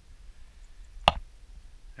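A single sharp click or tap about a second in, over a low steady rumble.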